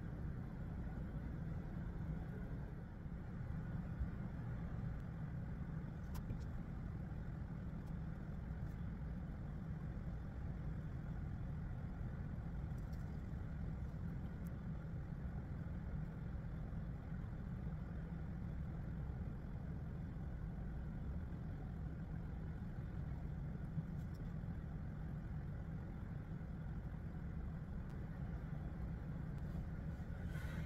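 A steady low rumble of background noise, with a few faint clicks.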